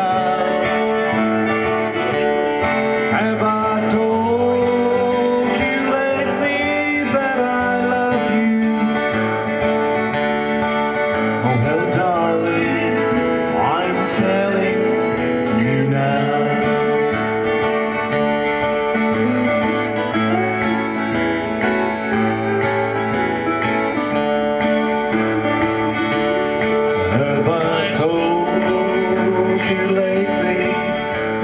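Country song with acoustic guitar and a singing voice, playing steadily throughout.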